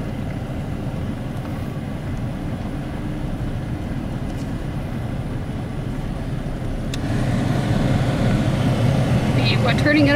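Steady low rumble of a car's engine and tyres heard from inside the cabin as the car rolls slowly along a gravel road. It grows louder about seven seconds in, and a voice starts right at the end.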